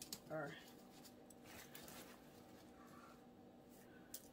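Near silence: faint room tone with a low steady hum, one short spoken word just after the start and a couple of faint clicks.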